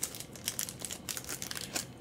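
Foil wrapper of a baseball card pack crinkling as the pack is opened and the cards are pulled out, in faint, irregular crackles.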